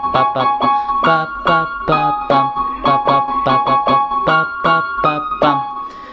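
A melody played on the piano voice of a Yamaha PSR-E223 portable keyboard: a run of single notes, about three a second, with lower notes beneath. The last notes ring out and fade just before the end.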